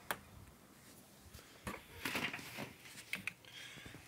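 Scattered clicks and short rustles: handling noise from a phone being moved about.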